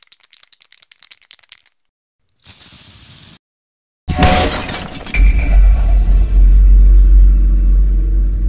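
Sound-effect sting for an animated logo: a run of quick crackles, a short burst of hiss, then a loud crash about four seconds in that opens into a deep, loud rumble with ringing tones.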